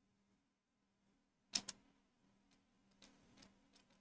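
Near silence broken by two sharp clicks of computer keyboard keys about a second and a half in, followed by a few faint key taps near the end.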